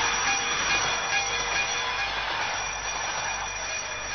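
Electronic dance music from a techno DJ set in a noisy passage: a dense, steady hiss-like wash with several held high tones and no clear beat.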